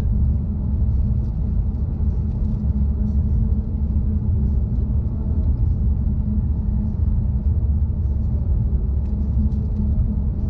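Steady low rumble of road and engine noise inside a car's cabin while cruising at highway speed.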